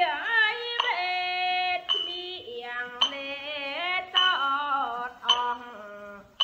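Khmer song: a singer holds notes and slides between them over a musical backing.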